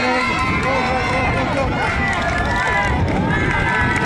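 A crowd of spectators, many voices talking and calling out at once.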